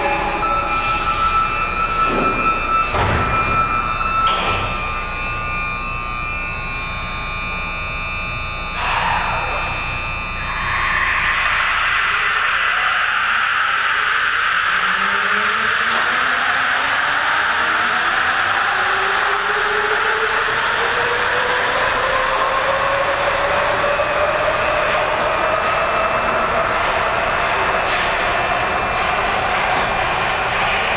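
Sapporo Municipal Subway Tozai Line rubber-tyred train pulling away from the platform. From about ten seconds in, a loud running noise sets in, and its motor whine climbs steadily in pitch as the train accelerates.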